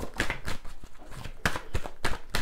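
Playing cards being handled over a wooden table: an irregular run of short, sharp clicks and taps, about half a dozen, as the cards are flicked and set down.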